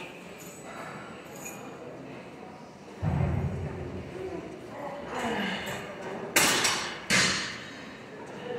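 A weightlifter straining through preacher-curl reps on a machine: a low thud about three seconds in, a strained grunt, then two loud, sharp exhaled breaths close to the microphone near the end.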